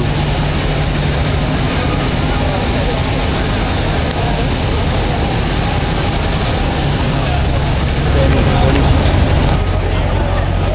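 Busy downtown street ambience: a steady low traffic and engine hum with the chatter of a crowd. The low hum grows louder for a couple of seconds near the end.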